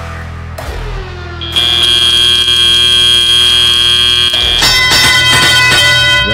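FRC field end-of-autonomous buzzer: a loud, steady, high-pitched buzz lasting about three seconds, starting about a second and a half in, over arena music. Near the end the buzz gives way to a different ringing cue, the field's signal that teleoperated play has started.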